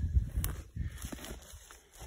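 Footsteps scuffing on dry, stony dirt, with a few sharp clicks and an uneven low rumble of the camera being handled.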